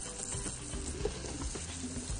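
Faint sizzling from pastırma and madımak frying in a lidded pot on a gas hob, with a few light clicks.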